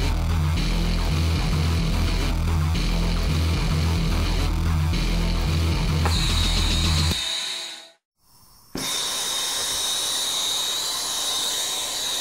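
Rock music with a heavy beat that fades out about seven seconds in. After a short silence a brazing torch flame takes over, a steady hiss with a thin high whine.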